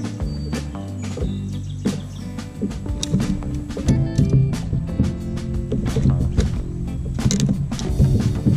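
Background music: held low notes, with a beat of drum hits coming in about three seconds in.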